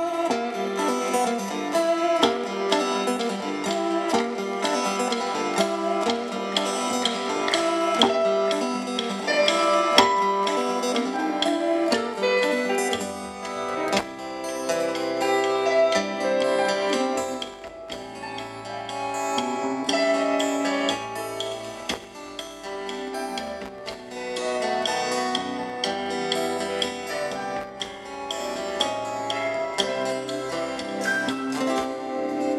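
Live rock band playing an instrumental passage with guitar to the fore, with no singing. A bass line comes in about halfway through.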